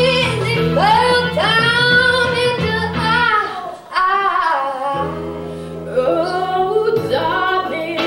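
Two girls singing a duet into microphones over instrumental accompaniment, taking turns on the lines.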